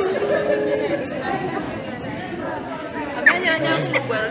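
Several people talking at once in a room, overlapping voices with one voice briefly louder about three seconds in.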